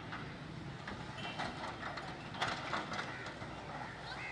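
Distant hydraulic excavator demolishing a building: a steady low engine hum with scattered clanks and knocks of the demolition, the loudest about two and a half seconds in.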